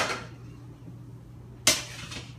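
Two sharp knocks, one right at the start and one near the end, each dying away quickly, over a faint steady low hum.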